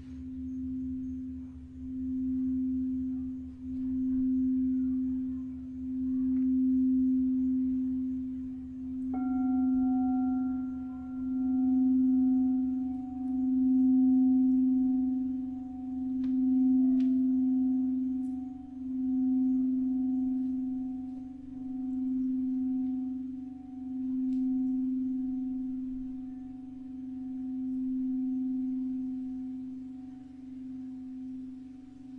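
Large pink crystal singing bowl played with a mallet, holding one steady low tone that swells and fades about every two seconds. About nine seconds in, a higher, clear crystal tone is struck and rings on over it.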